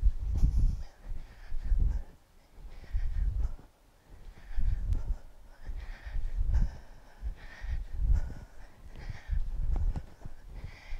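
A woman doing two-handed kettlebell swings: a hard breath out and a low thud with each swing, repeating about every second and a half.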